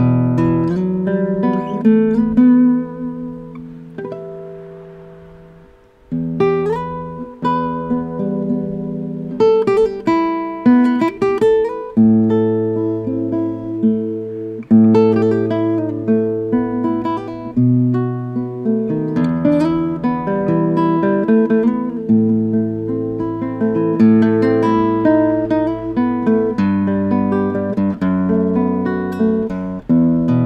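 Barclay cutaway nylon-string classical guitar played unplugged, a melody with chords; its acoustic sound is clean and clear but not loud. About four seconds in a chord is left ringing and fades away before the playing resumes.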